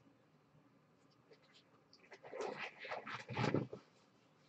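A short run of scratchy rustling and scraping from hands at work, starting about two seconds in and lasting under two seconds.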